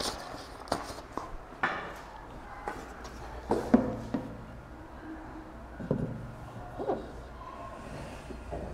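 A handful of irregular knocks and taps with brief rubbing between them as a long ruler is set against a whiteboard and a marker is drawn along it; the loudest knock comes a little under four seconds in.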